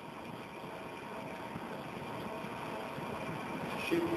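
Steady background noise of a lecture recording in a pause between sentences: an even hiss with a faint hum and no distinct events.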